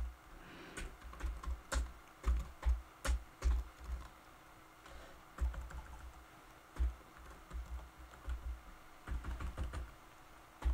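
Typing on a computer keyboard: irregular runs of key clicks, each with a dull low thump, with a short pause about halfway through.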